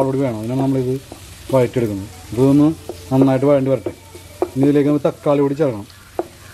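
Sliced red onions sizzling in oil in a frying pan, stirred with a wooden spatula, under a person talking.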